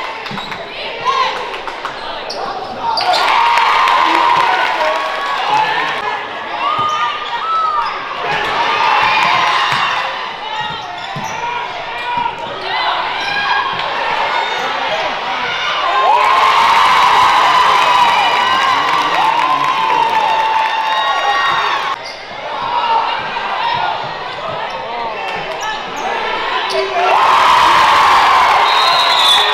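Live basketball game sound on a hardwood gym court: the ball bouncing, sneakers squeaking in short repeated chirps, and voices calling out from players and spectators.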